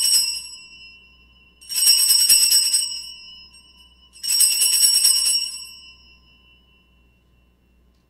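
Altar (Sanctus) bells shaken three times at the elevation of the consecrated host: the end of one ringing, then two more about two and a half seconds apart, each a jangling shake of about a second whose tones ring on briefly after.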